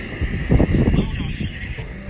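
Wind buffeting the phone's microphone with a heavy, steady rumble, and a brief loud burst of voice about half a second in.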